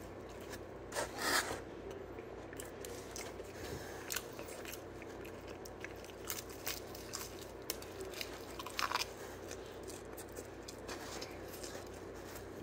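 A person biting and chewing crisp Domino's thin-crust pizza close to the microphone: sharp crunches, loudest about a second in and again later, with softer chewing between.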